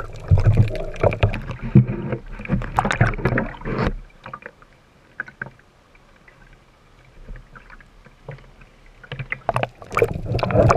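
Water moving and bubbling against an action camera in its waterproof housing, muffled under water with many small clicks. About 4 s in it drops to a quiet hiss as the camera comes up above the surface, then splashing and clicks return near the end as it goes back under.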